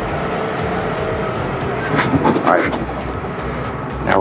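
Steady mechanical hum and rumble inside a passenger elevator, with a brief faint voice about halfway through.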